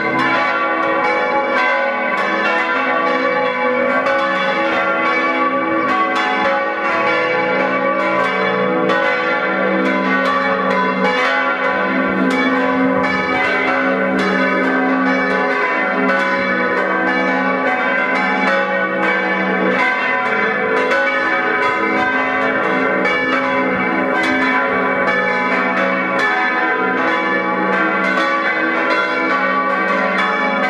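Full peal of the church bells of St. Dionysius, Oberbeuren: all the bells swinging and ringing together, their strokes overlapping in a dense, steady clangour.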